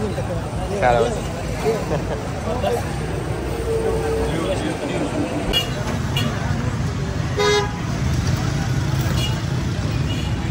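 Busy street traffic, engines rumbling steadily, with short vehicle horn toots: one about four seconds in and a brief sharper one about three-quarters of the way through.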